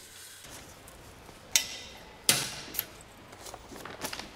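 Two sharp knocks about three-quarters of a second apart, the second the louder, then a fainter tap, over quiet room tone.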